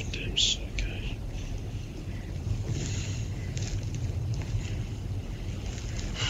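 Muffled low rumbling background noise of a home audio recording, with a few short hissing sounds in the first second and a fainter hiss about three seconds in.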